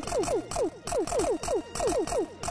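Electronic music from a meme clip: a fast, steady run of short synth hits, each a click followed by a quick downward drop in pitch, about four a second.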